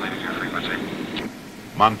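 Helicopter in flight: a steady rumble of engine and rotor that fades out a little over a second in. A man's narrating voice begins near the end.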